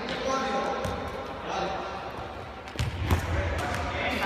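A futsal ball being kicked and bouncing on the wooden floor of a large indoor sports hall, with sharp thuds and the loudest impact about three seconds in. Children's voices carry on throughout.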